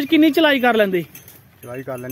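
A man's voice talking in two short stretches with a brief gap, with faint light metallic clinking behind.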